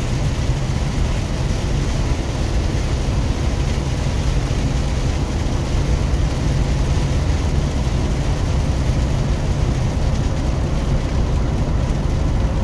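Big truck driving on a wet highway, heard inside the cab: a steady low engine and road rumble under an even hiss of tyres on the wet road and rain.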